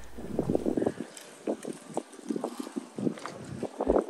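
Wind rumbling on the microphone for a moment, then soft, irregular footsteps and handling knocks as the camera is carried along the street.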